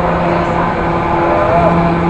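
Carousel in motion: a steady hum with overtones under a loud, even rushing noise.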